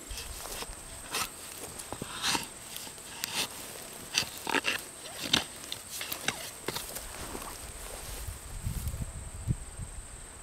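A long-handled garden tool digging into a straw-mulched potato bed: irregular crunches and scrapes as it is pushed through dry mulch and soil. A steady high insect trill runs underneath.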